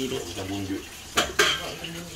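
Two sharp clinks of kitchenware close together, a little over a second in, over a faint voice in the background.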